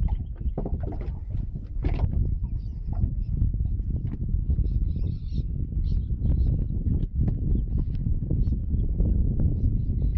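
Knocks and taps of a flathead being handled on a boat's carpeted deck and laid on a measuring mat, over a steady low rumble, with a few faint high chirps near the middle.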